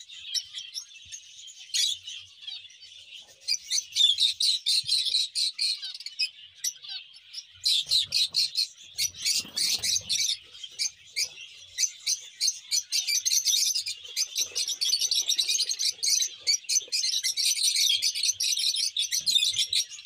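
A flock of peach-faced lovebirds chattering: dense, rapid, high-pitched chirps overlapping without pause, swelling and easing in waves.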